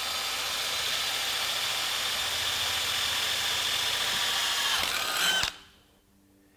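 Cordless DeWalt XR drill running at a steady high motor whine as a 5/16-inch Spyder Mach Blue Stinger split-tip bit cuts through an aluminum plate, then stopping abruptly about five and a half seconds in.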